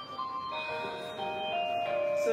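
A simple electronic chime tune: a run of clear, steady notes, each held briefly before stepping to the next pitch.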